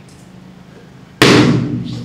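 A red rubber balloon popping with a single sharp, loud bang about a second in, ringing away in the room over most of a second.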